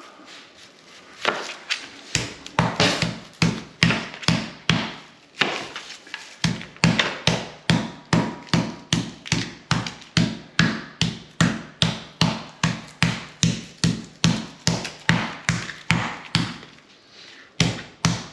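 Meat hammer pounding top sirloin steaks through plastic wrap, a steady run of thuds about two to three a second, with a short break partway through.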